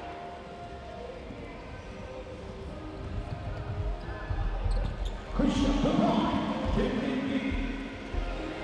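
A basketball is dribbled on a hardwood gym floor, its thuds growing louder about three seconds in. Past halfway, loud shouting and cheering voices break out over it as a basket is scored.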